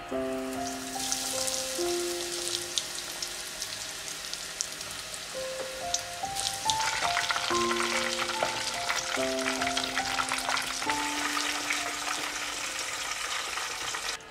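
Breadcrumb-coated chicken breast deep-frying in hot oil, sizzling with dense crackle that grows louder and busier about halfway through. Soft background music with sustained notes plays underneath.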